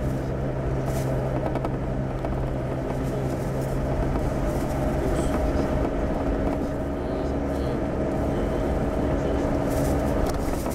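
Car cabin noise while driving: the engine and tyres make a steady hum with a constant low drone, heard from inside the car.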